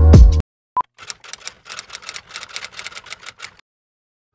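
Electronic music with a beat cuts off about half a second in, followed by a short beep. Then comes a quiet run of typewriter key clicks, about five a second, as a typing sound effect, which stops near the end.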